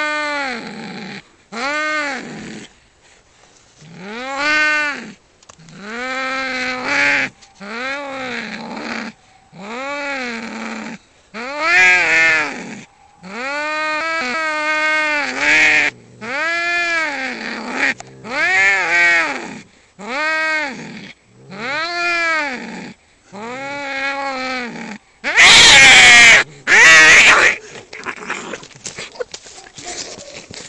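Domestic cats fighting: drawn-out aggressive yowls repeated over and over, each about a second long and rising then falling in pitch, with two loud, harsh outbursts near the end as they swat at each other.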